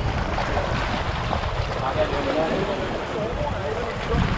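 Wind rumbling on the microphone over sea water sloshing in a rocky inlet, with people talking in the background.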